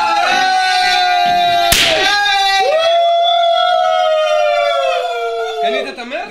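A confetti cannon (party popper) fired with a single sharp crack about two seconds in, between long, loud, high held notes from a voice. The second held note slides slowly down in pitch before breaking off near the end.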